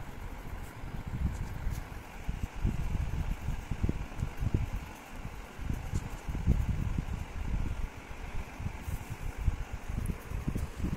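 Low, uneven rumble of air buffeting the microphone, swelling and fading over several seconds.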